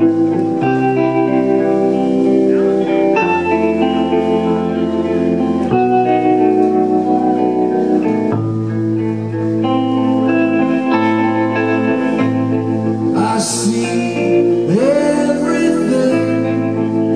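Rock band playing live and loud: electric guitars holding chords over a bass line that steps between notes every second or two, with sliding pitch glides near the end.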